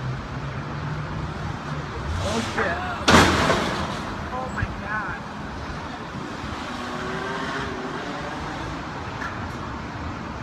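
A vehicle engine running, then a loud, sudden bang about three seconds in that fades over about a second, as the white Jeep Wrangler breaks free of the tow truck's wheel-lift. Voices are heard around it.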